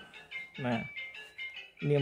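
A man's voice speaking in short phrases over soft background music with high, bell-like chiming tones.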